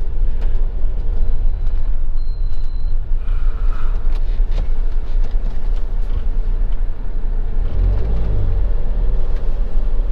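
Motorhome driving on a narrow country road, heard from inside the cab: a steady low engine and road rumble, swelling slightly near the end.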